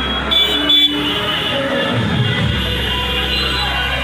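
A vehicle horn toots twice in quick succession about half a second in, over steady background music and street noise.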